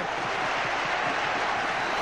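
Football stadium crowd cheering a home goal: a steady, loud din of many voices with no single voice standing out.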